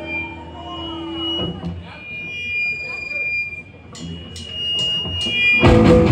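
Electric guitar amps hum and feed back in steady high tones, with a few bending notes early on. Four evenly spaced clicks, a drumstick count-in, are followed near the end by the full rock band crashing in loudly with distorted guitars and drums.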